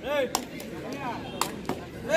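Players shouting on a dirt kabaddi court, with three sharp smacks about a second apart.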